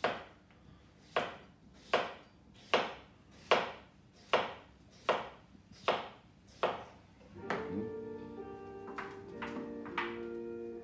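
A kitchen knife chopping through raw potatoes onto a cutting board: about nine even strokes, a little more than one a second. The chopping stops about three-quarters of the way through, and background music with sustained notes comes in.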